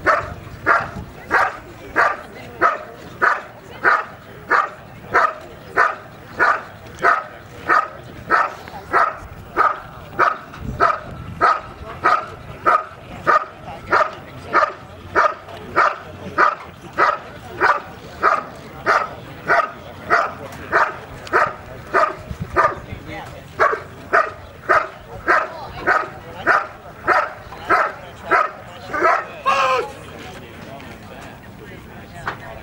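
A protection dog barking steadily at a helper hidden in a blind: the hold-and-bark phase of a protection routine. The barks are loud and evenly spaced, about one every 0.6 seconds, and stop at the very end.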